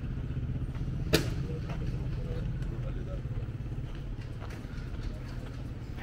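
Steady low hum of a motor vehicle engine running nearby, with one short sharp click about a second in.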